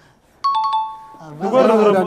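A bright two-tone ding-dong chime about half a second in, with several quick strikes and ringing for under a second, then loud overlapping voices break in.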